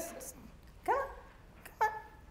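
Brief speech only: a woman says "Go" about a second in, and another short voiced sound, sharp-edged, comes near the end.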